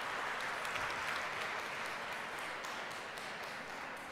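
Audience applauding, many people clapping together, slowly dying down towards the end.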